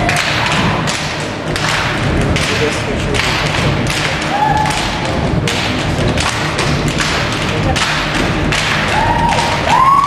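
A steady beat of heavy thumps, about three every two seconds, from the drum-driven music for a stage dance, heard in a large hall; a few short whoops from the audience come in near the end.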